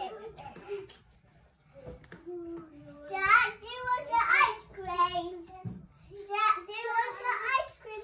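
A child talking off-mic in short, high-pitched phrases, after a brief quiet spell near the start.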